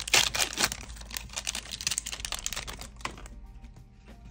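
Crackling and crinkling of a foil trading-card booster pack being handled and opened, a rapid run of small clicks that fades out about three seconds in, over quiet background music.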